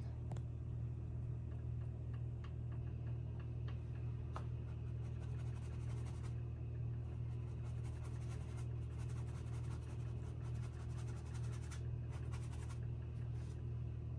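A small paintbrush working oil paint onto a stretched canvas in quick, short scratchy strokes. The strokes grow denser from about a third of the way in and pause briefly twice. A steady low hum runs underneath.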